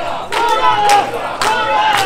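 A crowd of mikoshi bearers shouting a chant in chorus as they heave the portable shrine, loud and sustained, with sharp cracks cutting through twice.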